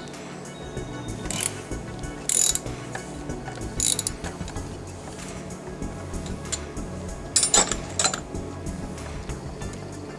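Socket ratchet clicking in several short bursts as it works a 13 mm bolt loose on a power steering pump, over background music.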